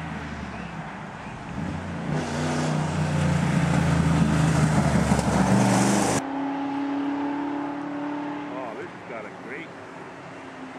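Rally car engine accelerating as the car comes up the road and passes close, building to its loudest around five seconds in. The sound cuts abruptly about six seconds in to another car's engine running more steadily and fading away.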